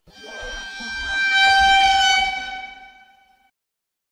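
A horn-like sound effect: one steady, high, buzzy note that swells up over the first second and a half, then fades away by about three and a half seconds in.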